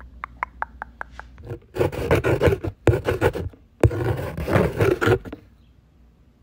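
Staged ASMR trigger sounds, not made by real objects: quick light tapping, about five taps a second with a short ringing pitch. About a second and a half in, it gives way to two bursts of loud, rough scratching, each about a second long, which stop a little after five seconds in.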